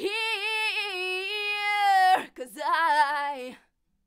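A woman's unaccompanied recorded vocal, played through the PreSonus ADL 700's equalizer: a long held note with vibrato for about two seconds, then a shorter sung phrase that cuts off about three-quarters of the way through.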